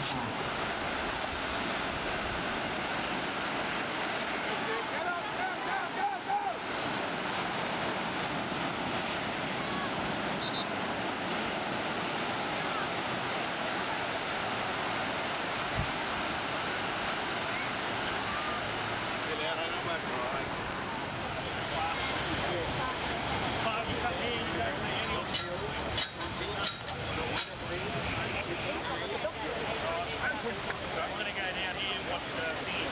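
Waves breaking and washing on a surf beach, a steady rush, with wind buffeting the microphone.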